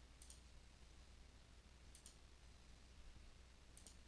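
Near silence with three faint computer mouse clicks, one near the start, one about two seconds in and one near the end.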